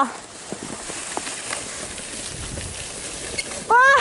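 Soft scraping hiss of a plastic sled sliding over snow, with a few faint crunches. Near the end a child's voice cries out loudly as he comes off the sled.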